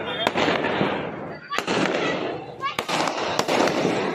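A string of firecrackers crackling rapidly, with about four louder sharp bangs spread through it, over the voices of a crowd.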